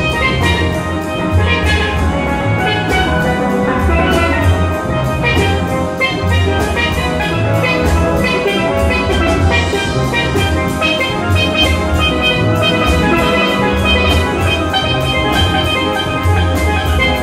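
Steel drum band playing a song live: many steel pans struck in a steady, busy rhythm over pulsing low bass pans, with drums behind them.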